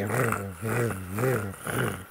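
Tacx Neo 2 SE smart trainer's electromagnetic motor humming in its gravel road-feel mode, swelling with each pedal stroke at about two pulses a second, a grinding buzz under the pedalling.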